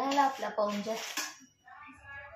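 Dishes and utensils clattering as they are handled in a basin, with a woman's voice over them in the first second and a half.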